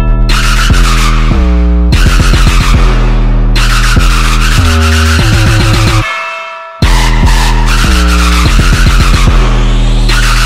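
Instrumental drop of an electronic dubstep/trap mashup: a heavy distorted bass synth with sliding, growling pitch over a driving beat. It drops out briefly, fading down about six seconds in, then comes back in full.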